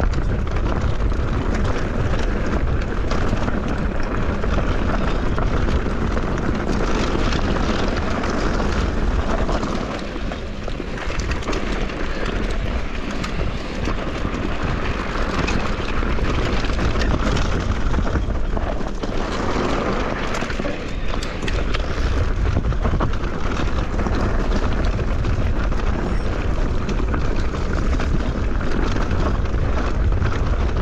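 Wind buffeting the microphone of a handlebar-mounted camera on a mountain bike being ridden over a loose, stony trail, mixed with tyres crunching on gravel and the bike rattling. The noise is steady and deep, easing slightly about ten seconds in.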